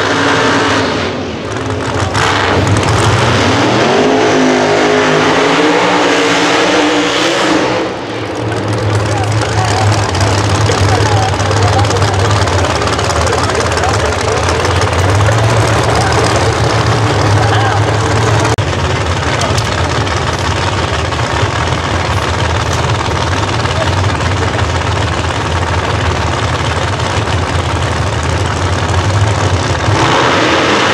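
Drag-race car engines. In the first several seconds there is a burnout, with the engine revving up and down and the tyre spinning. From about 8 seconds in the engines run steadily and loudly at low speed as the cars back up and stage.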